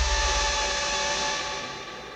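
Sudden low synthesizer chord, a horror-score sting: a deep bass rumble under a few steady held tones, fading away over about two seconds.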